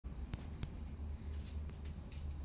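Insect chirping, a short high pulse repeated about five times a second, over a low steady hum, with two soft clicks in the first second.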